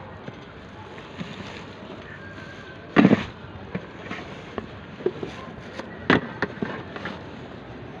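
Handling knocks from a helmet with a cased action camera being moved about in a plastic motorcycle top box: a loud thump about three seconds in, another about six seconds in, and lighter clicks and taps between, over a steady background hiss.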